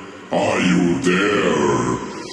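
A low, drawn-out vocal sample in a techno DJ mix, with no beat under it. The phrase begins about a third of a second in and carries on to the end.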